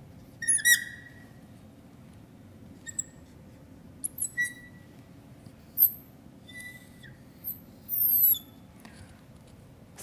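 Marker pen squeaking on a glass lightboard in a series of short writing strokes, as an equation number is written and circled and a box is drawn around the equation. The squeaks are high-pitched, and a few slide down in pitch near the end.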